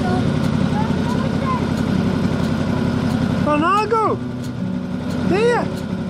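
A small engine idling steadily, with a child's high voice calling out twice in the second half, each call rising and falling.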